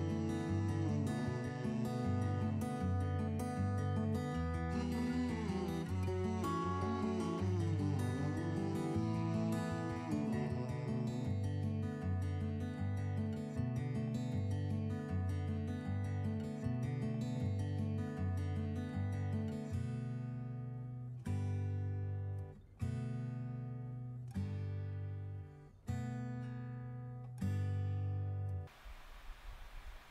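Acoustic guitar background music, ending in a few separate chords that each ring and fade, then stopping shortly before the end.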